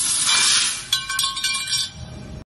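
Hiss of the tube laser cutting the steel section, then about a second in a sharp metallic clank as the cut-off piece of L-shaped steel tube drops onto the machine's sheet-steel unloading table, ringing with several clear tones that fade.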